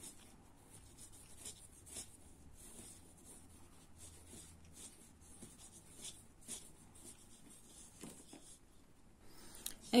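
Faint scratchy rustling of a steel crochet hook pulling thin polyester thread through stitches, with a few scattered small ticks.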